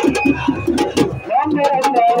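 A group of voices chanting a Sufi dhikr (zikr) together, over frequent sharp percussive strikes.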